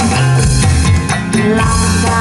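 Amplified live band music from an obrog troupe's cart: a steady drum beat and heavy bass under electric guitar, played loud through speakers.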